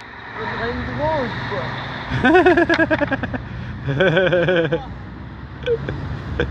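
Young men's voices laughing and calling out in short bursts, with no clear words, over a steady low background hum.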